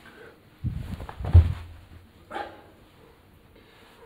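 A person jumping in place on a rug over a tiled floor: a low thump, then a heavy landing thud about one and a half seconds in, followed by a short, brief sound about a second later.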